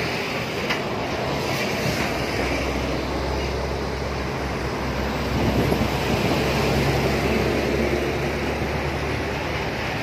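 Road traffic: a steady rumble of passing vehicles, with a heavier vehicle growing louder around the middle and easing off toward the end.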